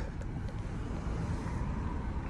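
Steady low rumble of a car's cabin noise, heard from inside the car.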